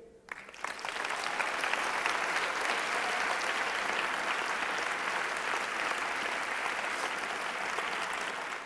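Audience applauding. The applause builds over the first second and then holds steady.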